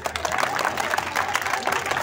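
A crowd applauding, many hands clapping together.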